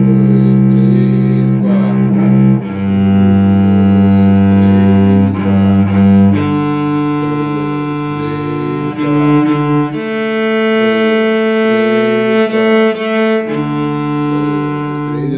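Cello played with the bow in a slow beginner exercise of long notes. Each sustained note lasts about three to four seconds with a brief bow change between them, and the pitch steps up string by string from the lowest to the highest, then drops back one string near the end.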